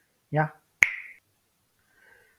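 One sharp click just under a second in, the loudest sound here, with a brief ringing tail.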